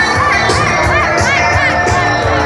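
A large crowd cheering and shouting, many voices at once, over loud music.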